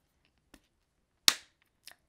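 A single sharp click about a second and a quarter in, with a faint tick before it and another just after, in an otherwise quiet pause.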